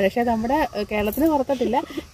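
Only speech: a woman talking steadily in Malayalam, with no other sound standing out.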